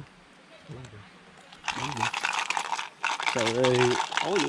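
Dry acacia bark and brush being stripped and handled: a dense crackling that starts abruptly a little under two seconds in and runs on under voices.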